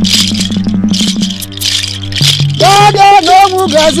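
A rattle is shaken in a quick, even rhythm over music with a low, steady drone. About two and a half seconds in, a man's voice comes in with long, held, wavering notes.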